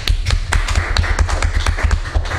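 Brief scattered clapping from a few people: irregular sharp claps, several a second, over a steady low rumble.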